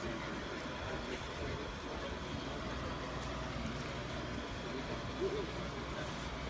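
Marine travel lift's engine running steadily, a constant low hum.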